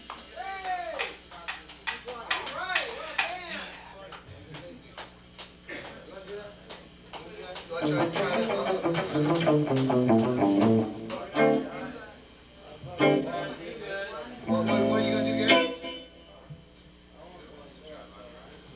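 Electric guitar played in loose phrases on a club stage's sound system: bent notes at first, a falling run of notes in the middle, then a short held chord that cuts off, with talk in the room underneath.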